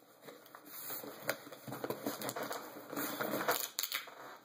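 Handling noise: irregular rustling and light clicks as things are moved about and picked up.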